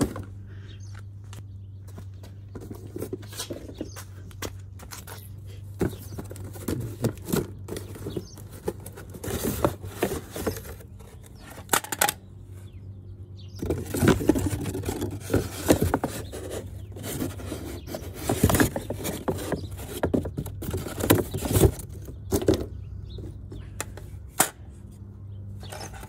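Cardboard packaging and plastic parts being handled: irregular scrapes, rustles and knocks, busiest in the second half, over a steady low hum.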